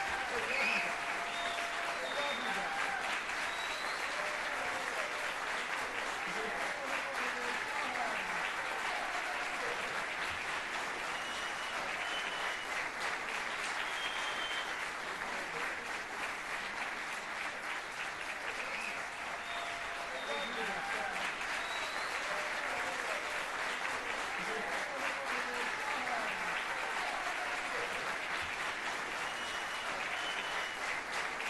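Audience applauding steadily for a middle school jazz band, with scattered voices calling out and cheering over the clapping.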